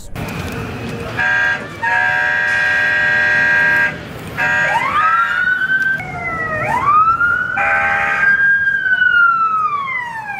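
Electronic sound effects from the button on a fire-truck-themed Zamperla ride car's steering wheel: a short horn honk, then a longer steady honk, then overlapping siren wails that rise and fall, with one more honk about eight seconds in.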